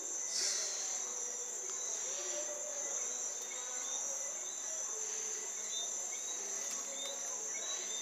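Crickets chirring: a steady, high-pitched trill.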